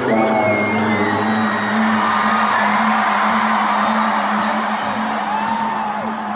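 Live concert music with one low note held steadily throughout, under the noise of a large crowd with whoops and shouts.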